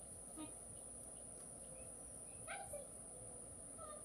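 Faint yard ambience of insects, likely crickets, holding one steady high-pitched drone, with a short rising vocal sound about two and a half seconds in.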